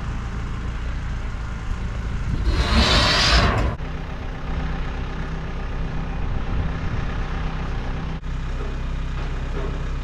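Tractor engine running steadily at a low idle. A loud burst of hissing, about a second long, comes roughly three seconds in.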